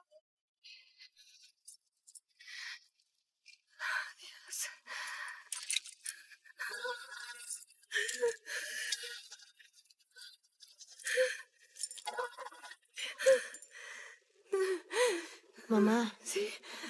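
A person breathing hard in ragged, irregular gasps and pants. Near the end these turn into short pitched whimpers.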